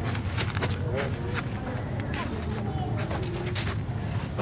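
Indistinct voices of people talking over a steady low rumble, with scattered short clicks and knocks.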